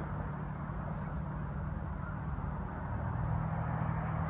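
Steady low outdoor rumble with a faint hum underneath, with no distinct events.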